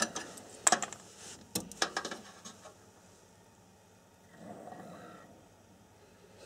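A few sharp clicks and knocks of cables and plastic connectors being handled inside a desktop computer case, clustered in the first two seconds. About four and a half seconds in there is a brief, faint rushing noise.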